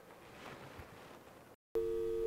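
A steady two-note telephone call tone starts abruptly near the end, loud and even, after faint room noise with a soft rustle.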